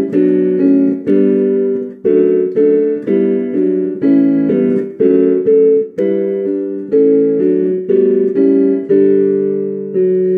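Piano accompaniment playing the hymn's introduction: block chords struck about twice a second, each fading before the next. A long held chord closes the phrase near the end.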